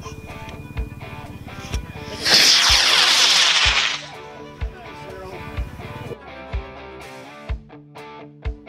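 Amateur rocket motor igniting and burning at liftoff: a loud rushing noise of about two seconds, starting a couple of seconds in. It sits over background music with a steady beat about once a second.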